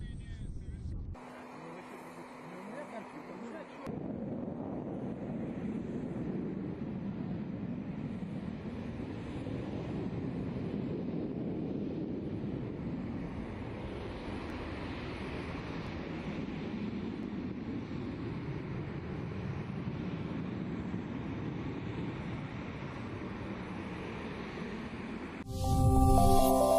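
Jet engines of a Tu-160M strategic bomber flying past: a steady, rushing noise that swells and eases slowly over about twenty seconds, beginning about four seconds in after a couple of brief cuts. A loud burst of electronic music starts just before the end.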